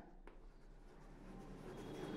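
Faint chalk writing on a blackboard as a row of digits is written.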